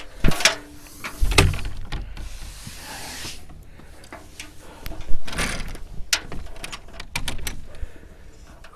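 A wooden chicken-coop door being pushed open and shut, with irregular knocks, clunks and rattles and a scraping of about a second and a half, two seconds in; the loudest knock comes about five seconds in.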